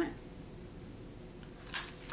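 One short, sharp handling noise near the end, like a small cosmetic container being clicked or set down while it is being fumbled with.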